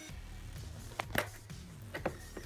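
Two short, sharp clicks about a second in from a knife and the cardboard lightsaber box being handled while tape is cut, over faint background music.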